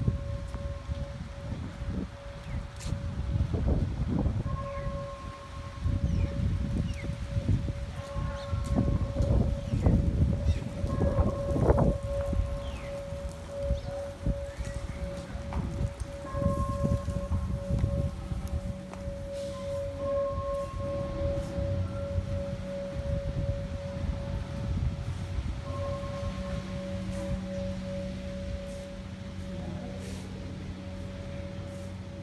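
A steady, faintly pulsing tone held on one pitch throughout, with irregular low rumble of wind on the microphone, heaviest in the first half.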